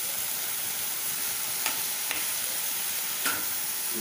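Spinach leaves frying and sizzling in a metal kadai as they are stirred with a spatula, with a few light clicks of the spatula against the pan.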